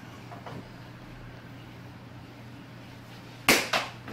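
A sharp smack about three and a half seconds in, with a second, smaller knock just after, from a plastic wiffle ball being hit or striking something. Under it is a low, steady room hum.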